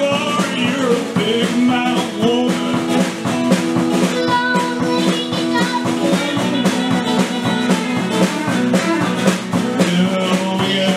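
A small band playing an upbeat country/rockabilly song: drum kit, strummed acoustic guitar and electric guitar.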